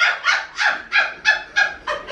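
A person laughing in a rapid, high-pitched cackle: a quick run of short, evenly spaced bursts, about four or five a second.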